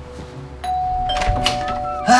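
Two-note doorbell chime ringing ding-dong: a higher note strikes about half a second in and a lower note about a second in, both ringing on.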